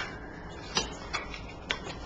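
A few faint, irregularly spaced clicks of tarot cards being thumbed through and drawn from a deck in the hands.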